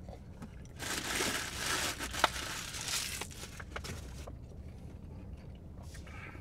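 Paper crinkling and rustling for about two and a half seconds, with sharp crackles in it, then a few small clicks.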